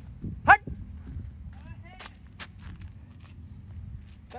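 Hurried footsteps and the rumble of a handheld phone on a dirt road. One short, loud, rising cry comes about half a second in, followed by fainter calls and a few sharp clicks.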